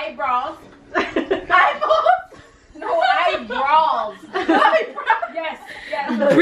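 Women's voices chuckling and laughing, with bits of unclear talk.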